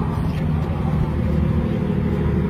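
Steady low hum and rumble of background noise at a large outdoor rally, recorded on a mobile phone, with no speech over it.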